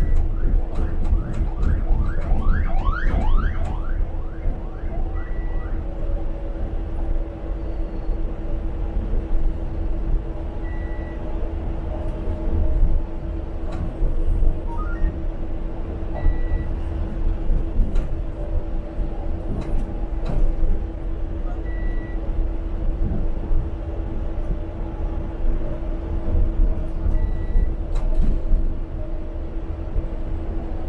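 Cabin noise of a Transmilenio articulated bus on the move: low engine and road rumble with a steady hum. A short high beep repeats about every five and a half seconds, and a quick run of rising chirps comes in the first few seconds.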